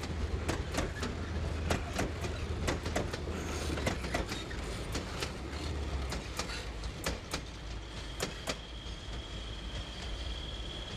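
Freight train of open coal wagons rolling past, wheels clicking over rail joints over a low rumble. The rumble fades about six seconds in, and the clicks stop a couple of seconds later as the last wagons pass.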